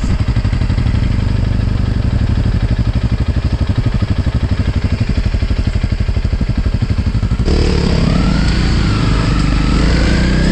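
Honda CRF single-cylinder four-stroke dual-sport motorcycle engine running with an even pulsing beat, then about three-quarters of the way through the sound changes abruptly and the engine revs up, rising in pitch as the bike pulls away.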